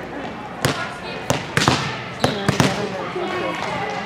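Volleyballs smacking off hands and the gym floor, about seven sharp, echoing hits in quick succession through the first half, over a background murmur of voices in a large hall.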